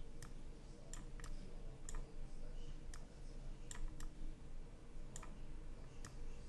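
Computer mouse button clicking, about eight sharp clicks at irregular intervals while the transform handles are dragged to resize an image, over a faint low room hum.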